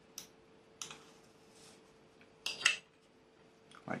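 A few light clicks and taps from hands handling balsa-wood model parts and a glue tube on a cutting mat, with a louder pair of taps a little past halfway. A faint steady hum runs underneath.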